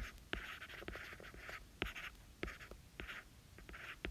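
A stylus writing on a tablet screen: a run of short scratchy strokes with light taps as the words are written out.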